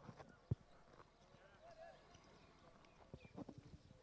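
Faint polo ponies' hoofbeats on turf, almost at near-silence level, with a single sharp knock about half a second in and a short run of soft thuds near the end.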